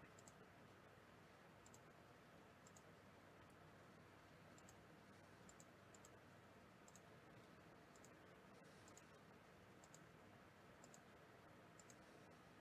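Faint computer mouse clicks, about ten spread unevenly over the stretch, each a quick pair of ticks, over near-silent room hiss.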